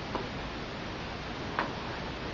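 Two single key presses on a laptop keyboard, about a second and a half apart, over a steady hiss of room noise.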